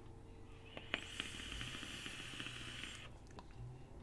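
An e-cigarette being drawn on: a click, then a steady hiss for about two seconds as vapour is pulled through it, stopping abruptly.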